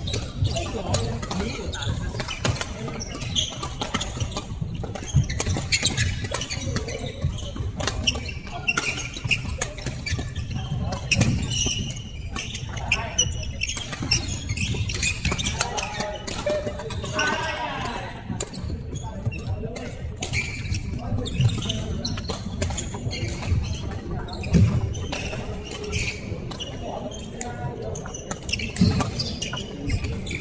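Badminton play in a large, echoing hall: sharp racket strikes on the shuttlecock and thuds of footsteps on the wooden court, repeating irregularly, over a background of voices from players on the other courts.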